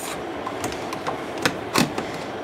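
Stainless steel spaetzle maker: its hopper sliding across the perforated grater plate, metal rubbing on metal with a few sharp clicks, as dough is pressed through into the soup.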